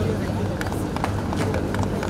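Indistinct voices of several people talking at once, over a steady low hum, with a few short sharp clicks.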